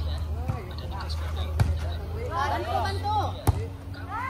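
A volleyball struck by hand twice, about a second and a half in and again near the end, each hit a sharp smack. Players' voices call out between the hits.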